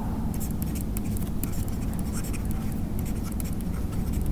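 Stylus writing on a tablet: a run of short scratches and taps as a short note is handwritten, over a steady low room hum.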